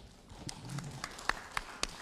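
A handful of sharp, irregular taps and knocks, the clearest three coming in quick succession in the second half.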